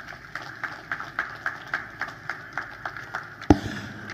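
Hands clapping in a steady rhythm, about three or four claps a second, with one louder thump near the end.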